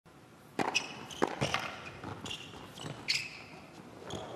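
Tennis rally on an indoor hard court: a serve struck about half a second in, then several sharp racket hits and ball bounces, with short high-pitched shoe squeaks on the court surface in between.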